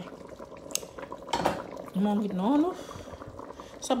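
A metal utensil clinks and clatters against a large metal cooking pot, once lightly and then louder about a second and a half in, over the bubbling of a simmering stew.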